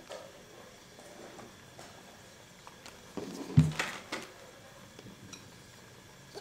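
Tableware handled during a hot-pot meal: a few light clinks of chopsticks, bowls and plastic containers, with a cluster of knocks a little past halfway and one sharp, loud knock among them.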